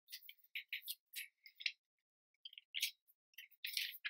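Faint, irregular string of short, high-pitched scratchy noises, a dozen or so brief rustles and scrapes with silent gaps between them.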